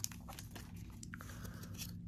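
Faint handling of trading cards and an opened foil booster pack: a few light clicks and a soft rustle as the cards are slid through the hands.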